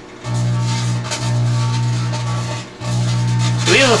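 Microwave oven running with a grape-made plasma inside, giving a loud, steady electrical hum that cuts out briefly three times, as the glowing plasma flickers out and reignites.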